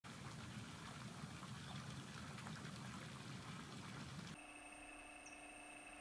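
Pool water churning and splashing from the filter return jets. About four seconds in, this gives way to the faint steady hum of the Vevor 900 W solar pool pump running, with a few thin steady tones.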